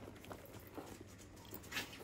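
Handbags being handled on a shop rack: faint rustling and light clicks from straps and metal clips, with one louder rustle near the end.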